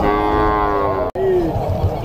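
Cattle mooing: one call about a second long, falling slightly in pitch, that breaks off abruptly, followed by a shorter falling call.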